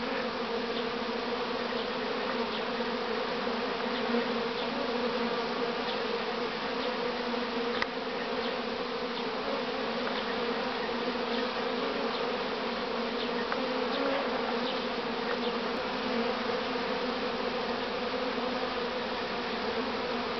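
Honeybees buzzing in a dense, steady drone around hive entrances, with single bees now and then passing close in short rising and falling buzzes. It is the busy flight of colonies that have come through winter well and are active again in spring.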